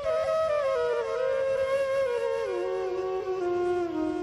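A solo wind instrument plays a slow melody that steps down in pitch, gliding between held notes.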